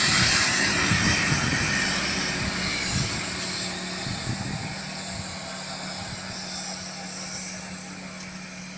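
A motor vehicle's engine running, loudest at the start and slowly fading, with a steady hum joining about three seconds in.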